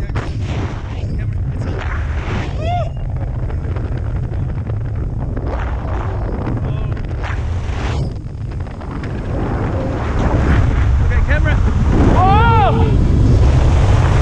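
Wind buffeting the camera microphone during a tandem skydive as the parachute opens and the pair descend under canopy, getting louder in the last few seconds. Brief shouts cut through about three seconds in and again near the end.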